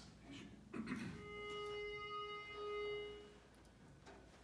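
A pitch pipe blown on one steady note for a little over two seconds, with a brief break partway, giving the starting pitch for an a cappella barbershop quartet. Soft shuffling of feet comes just before it.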